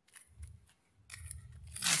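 Scissors snipping a few times, likely cutting open the plastic nursery bag, followed by a rustling handling noise that builds up toward the end.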